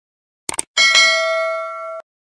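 A quick double mouse click, then a notification bell ding that rings on with several steady tones and slowly fades before cutting off abruptly: the sound effect of a subscribe-button animation clicking the bell icon.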